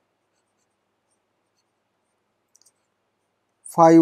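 Near silence with a few faint ticks about two and a half seconds in, then a man's voice starts just before the end.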